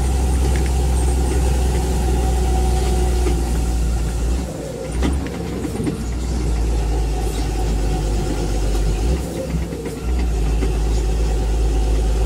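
Steady low rumble of engine and road noise inside a moving vehicle's cabin as it drives along a town street, easing off briefly twice.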